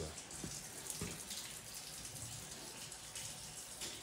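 Steady hiss of running water, like a tap or hose running, with a few faint knocks.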